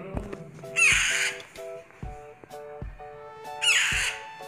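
Baby Alexandrine parakeets giving two loud, harsh, raspy squawks, about a second in and again near the end, typical of hand-fed chicks calling for food. Background music with a steady beat plays underneath.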